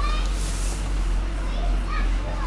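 Steady low electrical hum, with faint high-pitched voices in the background briefly near the start and again near the end.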